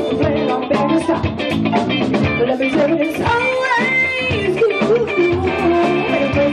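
A live band playing with electric guitar and a drum kit keeping a steady beat, and a woman singing lead over it.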